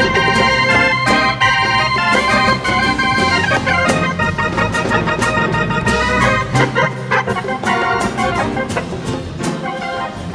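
Live band music with a keyboard solo played in an organ voice, over steady hand-drum strokes and the rest of the band.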